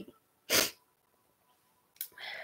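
A woman's single short, sharp burst of breath through the nose and mouth, about half a second in.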